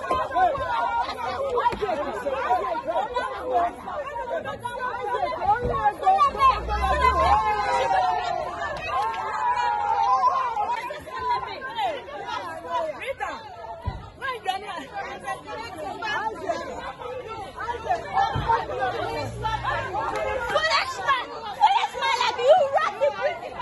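A crowd of voices talking and calling out over one another, with no single speaker standing out.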